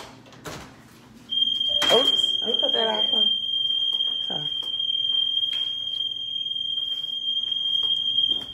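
A single steady, high-pitched electronic alarm tone comes on suddenly about a second in and holds at one pitch for about seven seconds. Over it are a knock and a few seconds of voice and laughter.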